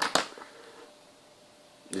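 Two sharp clicks in quick succession as the small plastic servo tester module is handled.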